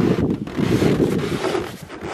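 Wind blowing across the microphone, loud and gusting, most of it a low rushing noise.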